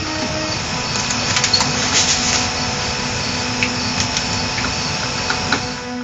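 Faint clicks and rustles of headphones being handled and put on, over a steady hum and hiss.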